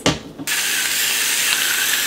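Electric salt and pepper grinder running, its motor grinding seasoning in one steady whir lasting about a second and a half. A short click comes just before it.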